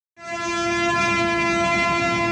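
Diesel locomotive horn sounding one long, steady blast that starts a moment in.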